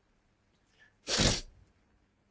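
A person sneezing once: a short, sharp burst of breath noise about a second in, after a brief faint intake.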